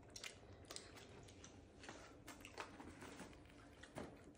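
Near silence with faint chewing and a few small clicks: a child eating pieces of a hard chocolate shell.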